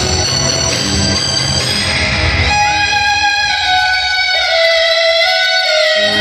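Live instrumental music from an Odia jatra band: drums and keyboard chords, then from about halfway the drums drop away and a single sustained melody line carries on, sliding in pitch between notes.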